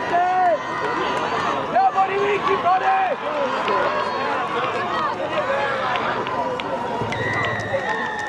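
Several voices of rugby players and onlookers shouting and calling across an open field, in short overlapping shouts. Near the end a steady high tone comes in and holds for about a second.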